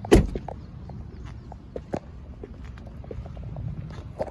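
A 2020 Honda Pilot's tailgate is shut with one heavy thump at the start, followed by light footsteps on parking-lot asphalt.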